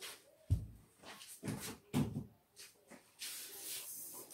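Handling noise as a Swiffer mop is taken down: a low thump about half a second in, a few lighter knocks, then a faint scraping near the end.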